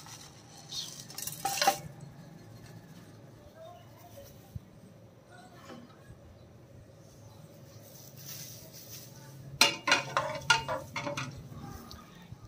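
A brief clatter early on as whole spices drop into an aluminium pressure cooker. Then, from about ten seconds in, a run of clinks and scrapes as a steel ladle stirs the spices frying in the oil in the bottom of the pot.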